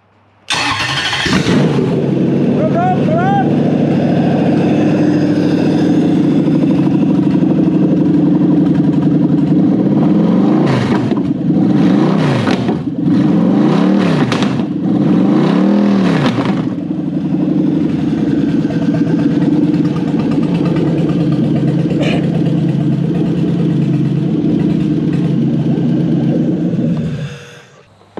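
Toyota 1UZ-FE 4.0-litre V8 starting on an engine stand and running on a newly wired Link Monsoon aftermarket ECU. It catches about half a second in and settles to a steady idle. Around the middle it is revved several times, then idles again and shuts off suddenly near the end.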